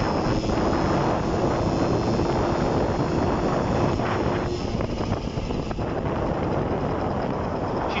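Honda SH50 scooter's 49 cc two-stroke engine running at speed under a steady rush of wind over the microphone. The engine is pulling well, running properly on a newly fitted ignition coil.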